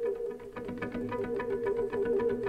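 Live free-improvised electroacoustic ensemble music: a steady low drone under quick repeated pitched notes.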